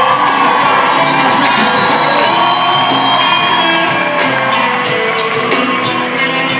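Live rock band playing on stage with electric guitars, bass and drums, in a large hall, with the audience whooping and shouting.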